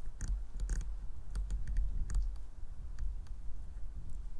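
A camera's control dial clicking in a run of irregular single steps as the shutter speed is raised to bring down an overexposed image, over a low rumble of handling or wind on the microphone.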